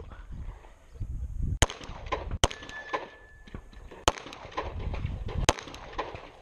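A handgun firing at a practical pistol match: four sharp shots at uneven intervals, the first about a second and a half in and the last about a second before the end.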